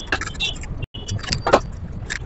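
String mop being pushed and scraped across a tiled floor, with scattered irregular knocks and clicks. The sound cuts out for an instant just before a second in.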